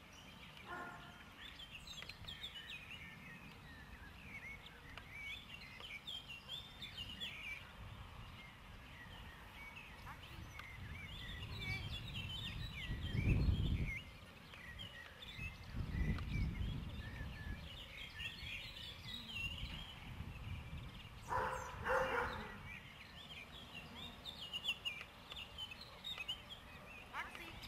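Small birds chirping and singing throughout, with two loud low rumbles of wind on the microphone around the middle and a brief call-like sound a few seconds before the end.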